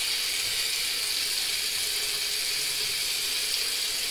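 Steady hiss of tap water running into a sink, unchanging throughout.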